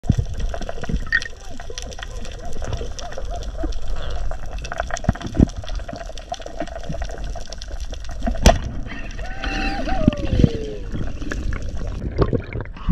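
Underwater sound on a reef: steady crackling clicks and low water rumble. There is one sharp crack about eight and a half seconds in. Then a muffled voice calls through the water for about two seconds, its pitch falling.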